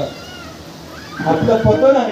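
A man's voice through the microphone and loudspeakers, drawn out and wavering in pitch, starting a little past halfway after a quieter first half.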